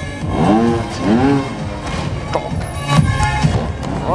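A trial motorcycle's engine is revved in short throttle bursts as it jumps up onto the raised platform of a truck, with a couple of sharp knocks from the bike striking and landing late in the jump. Loud background music plays throughout.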